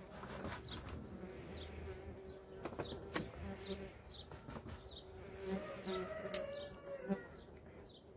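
Honeybees buzzing at an opened hive, broken by sharp knocks and scrapes as the hive's metal-clad lid and wooden inner cover are handled and lifted off. The loudest knocks come about three seconds in and again near the end.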